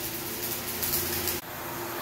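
Electric arc welding on steel trellis arms: a steady crackling hiss that cuts off abruptly about a second and a half in, leaving a quieter background.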